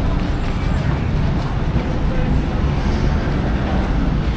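Steady rumble of road traffic, a constant low noise with no distinct passes or horns.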